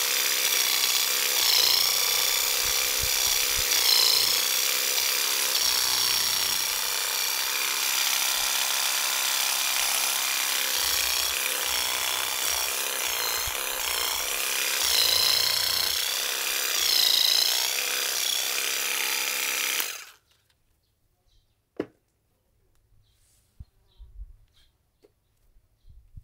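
MUSASHI WE-700 corded electric weeding vibrator buzzing steadily as its vibrating fork blade works into the soil around a weed, the pitch sagging briefly several times. It cuts off suddenly about 20 seconds in, followed by a single click.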